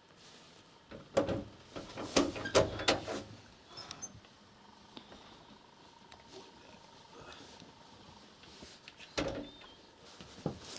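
Dogs barking: a quick run of several barks early on and a single bark just before the end.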